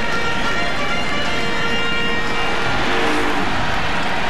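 Baseball stadium crowd noise heard through a TV broadcast, a steady roar with several held musical tones over it that fade after a couple of seconds.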